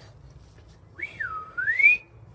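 A single whistled note starting about a second in, dipping in pitch and then gliding up higher.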